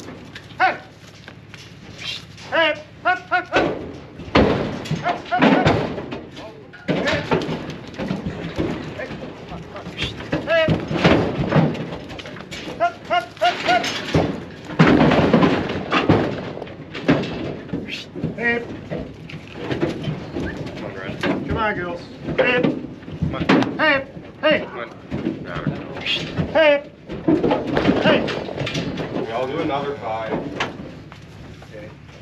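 Heifers being loaded into an aluminium livestock trailer: repeated thuds and clatters of hooves on the trailer floor and bodies knocking its sides, mixed with people's shouted calls driving them in.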